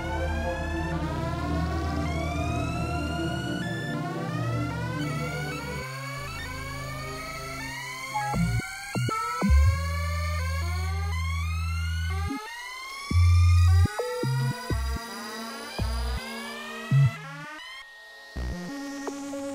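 Experimental synthesizer music: repeated rising pitch sweeps, about one a second, over a pulsing low drone. From about halfway, low bass tones start and stop abruptly, the loudest a short one about thirteen seconds in.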